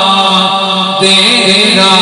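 A man reciting a naat solo into a microphone, holding one long note, then moving into a new melodic phrase about halfway through.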